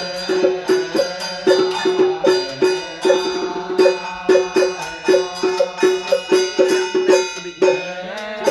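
Vietnamese ritual music: a quick, even run of sharply struck, pitched notes, about three to four a second, over a steady low tone, with light percussion.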